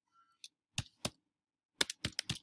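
Computer keyboard keystrokes typing a new file name: about five sharp key clicks at an uneven pace, the last two close together near the end.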